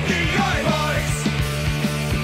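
Oi! punk rock recording: electric guitar and bass over a steady drum beat, about four hits a second.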